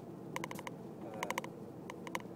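Steady low engine and road hum inside a vehicle's cabin, broken by a few quick bursts of sharp, ringing ticks.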